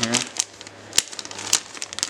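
Plastic soft-bait package crinkling as it is handled, with several short, sharp crackles.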